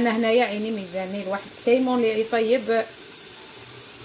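Mutton and onions frying in oil in a pressure cooker, a steady sizzle heard under a woman's speech that fills most of the first three seconds.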